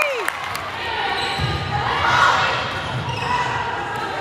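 Volleyball rally sounds in a gymnasium: thuds of the ball and players' feet on the hardwood court over steady crowd chatter.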